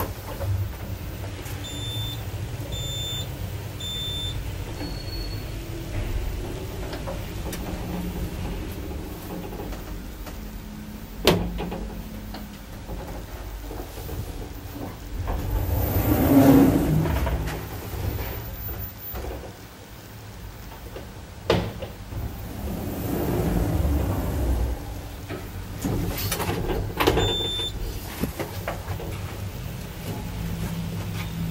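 Orona passenger lift in use: the low hum and rumble of the car and its doors, with louder swells as it moves. Three short electronic beeps about a second apart come about two seconds in, another near the end, and two sharp clunks come about 11 and 21 seconds in.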